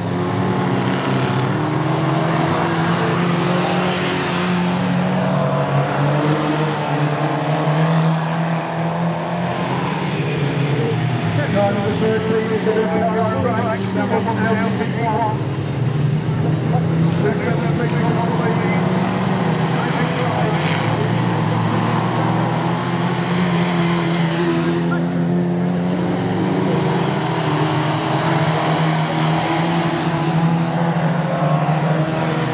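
Modstox stock cars racing on a dirt oval. Several engines run together, their note rising and falling as the cars accelerate and pass.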